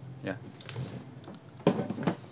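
Handling knocks from an electric hand planer's plastic body being turned over and set down on a wooden table: a few light clicks, then a loud clunk near the end. The planer is not running.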